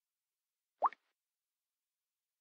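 A single short rising blip, like a bubble pop, from the Samsung Galaxy S4's interface sounds, a little under a second in.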